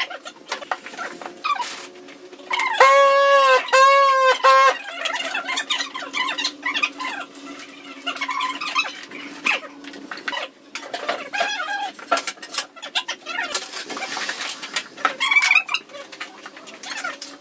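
An animal calling twice in loud pitched cries about three seconds in, over scattered light clicks and taps from tile work.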